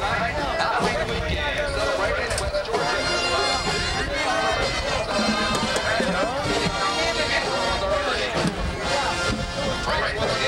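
College marching band brass and drums playing in the stands, mixed with crowd talk close by.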